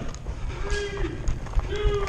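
Running footsteps on a hard floor, heard as uneven thuds through a helmet-mounted camera, with two short shouts from players partway through and near the end.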